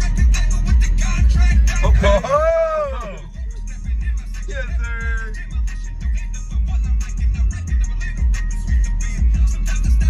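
Rap track playing with a heavy bass beat and a rapping voice; the beat drops out for about a second around three seconds in, then comes back.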